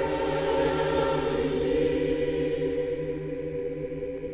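Mixed choir of men's and women's voices singing, holding long chords with a steady low bass line beneath.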